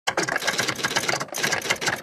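Typewriter typing sound effect: a rapid, continuous clatter of key strikes with a brief break about a second and a quarter in.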